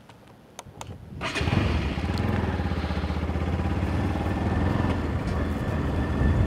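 A couple of faint clicks, then a motorcycle engine starts about a second in and runs steadily as the bike moves off.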